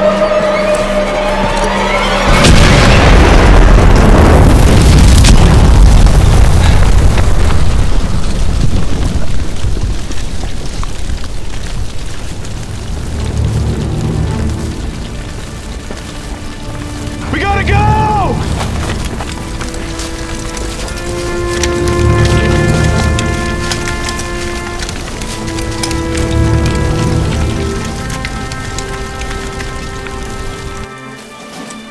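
A loud explosion about two seconds in, its rumble dying away over several seconds. It is followed by a dramatic film score of held tones over a low pulse that comes about every four seconds.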